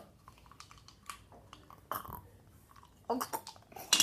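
A person chewing a mouthful of hard sour gumballs: faint, irregular clicks and crunches from the mouth, with a short vocal sound about three seconds in.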